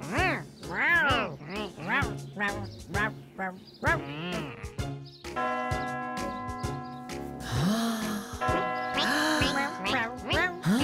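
Playful children's music of quick up-and-down gliding notes. About five seconds in, a cartoon clock tower's bells begin to chime, several long held tones ringing over the music.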